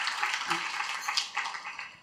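Audience applause dying away, a dense patter of many hands clapping that fades steadily to nothing by the end.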